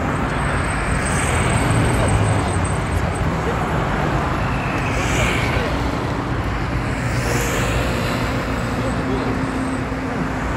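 Steady city road traffic noise: cars and buses running along a busy street.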